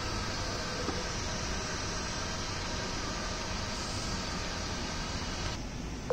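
Steady whirring hum with a hiss from a small electric model boat's motors turning its paddle wheels in the water; the hiss drops away shortly before the end.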